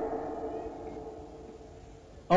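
A short pause in a man's speech: the end of his last phrase dies away as a fading echo, leaving only a faint steady hum.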